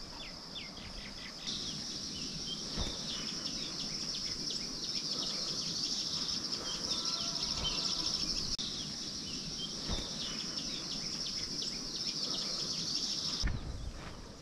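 A steady high-pitched insect buzz with bird chirps scattered over it. The buzz grows louder about a second and a half in and cuts off suddenly near the end.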